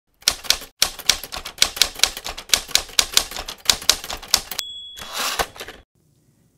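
Manual typewriter keys clacking in a quick, uneven run for about four and a half seconds. Then the carriage bell dings once, and the carriage is pushed back with a short rushing slide.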